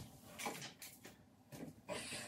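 Faint rummaging in a low bathroom vanity cabinet: a few short, soft knocks and rustles as items are moved about.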